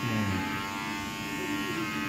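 Electric hair clippers running with a steady buzz.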